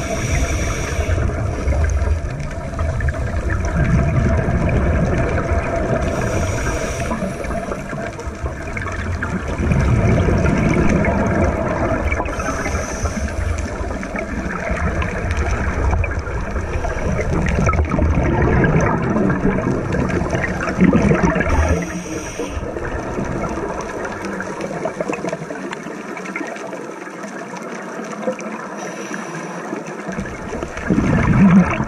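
Scuba regulator breathing heard underwater through a camera housing: exhaled bubbles burst out every five or six seconds over a steady low rumble.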